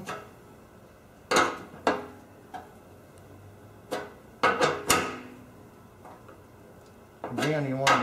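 Sharp metal clinks from a T-handle tap wrench and 1/8-inch pipe tap being turned by hand into a generator gas tank's fitting hole: two about a second apart early on, then a quick run of three or four around the middle. A man's voice starts near the end.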